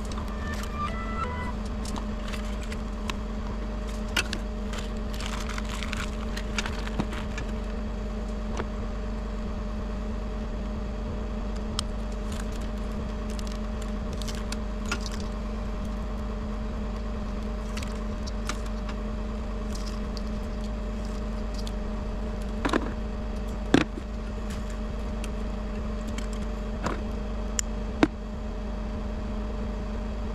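Bucket truck engine idling with a steady hum, while scattered sharp clicks and snaps come from handling fiber cable, buffer tubes and hand tools. The loudest snaps come near the end.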